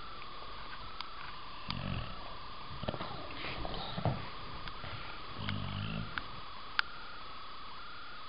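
English bulldog making several short, low grunting sounds as it gets up and moves about on a bed. There are a few sharp clicks and a steady high whine behind it.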